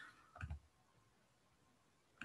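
Near silence, with one faint computer mouse click about half a second in.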